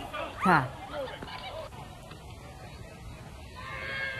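A loud human cry falling steeply in pitch about half a second in, then a quieter stretch of street noise and a fainter cry near the end, from people in a street scuffle.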